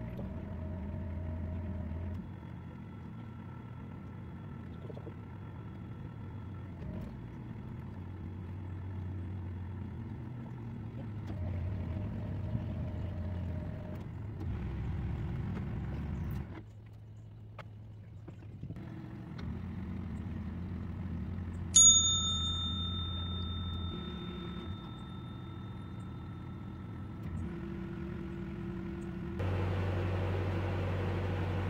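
Narrowboat's diesel engine running with a steady low hum at cruising speed, its level shifting a few times. About two-thirds of the way through, a single sharp bell-like ding rings out clearly for several seconds.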